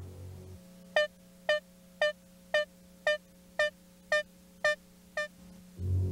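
Synthesizer background music: a steady low drone under one short, bright note repeated about twice a second, nine times.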